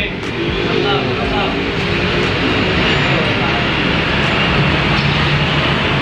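Indistinct voices of several people talking over a steady background din in a busy eatery.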